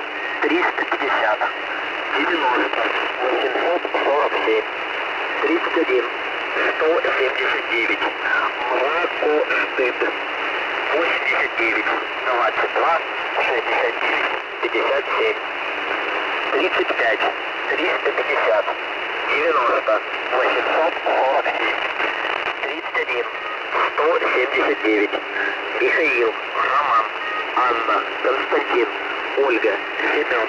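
A Russian voice reading out a coded message, numbers and phonetic-alphabet words such as 'Семён', received on a shortwave radio. The voice is thin and narrow-band, with steady static behind it.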